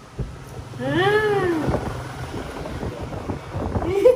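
A cat meowing: one long call that rises and then falls in pitch, about a second in, with another meow starting right at the end.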